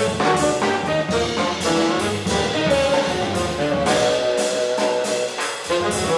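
A modern jazz quartet playing live: tenor saxophone holding a melody over piano, double bass and drums. The low bass drops out for about a second near the end.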